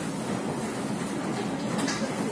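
Steady low rumbling background din of a gym, with one brief sharp click near the end.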